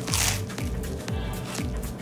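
A crunchy bite into a toasted grilled cheese sandwich with Cheetos inside, right at the start, over background music with a steady low beat.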